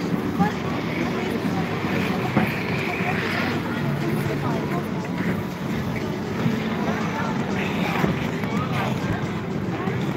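Busy ice rink: voices of many skaters chattering over a steady scraping hiss of ice skate blades gliding on the ice.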